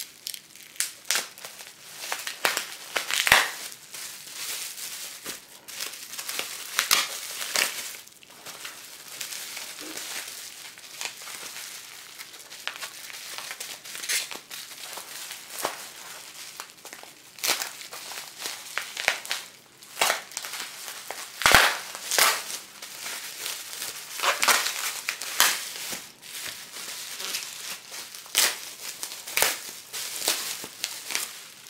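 Bubble wrap and gift-wrap paper crinkling and crackling in the hands as a wrapped parcel is opened, in irregular handling bursts with a few sharper crunches.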